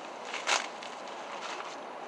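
A plastic tarp being handled and pressed against the tent's floor fabric, with one short crinkling rustle about half a second in over a faint steady hiss.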